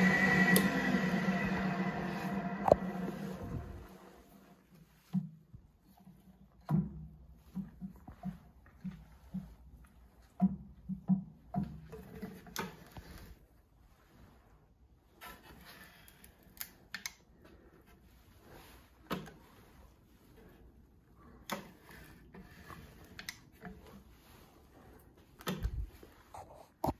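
Wisent DCG-25 geared-head drill press running with a high whine over a low hum, then spinning down and fading out over about four seconds as it stops. After that there are only faint scattered clicks and knocks.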